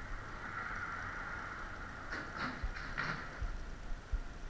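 Footsteps on concrete pavement: a few short scuffs in the second half over a steady background hum, with low thumps near the end.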